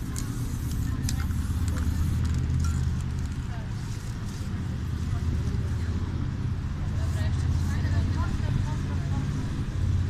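Steady low rumble of outdoor street noise with indistinct voices of people nearby.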